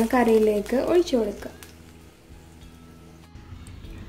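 A voice speaks briefly at the start, then only soft background music remains.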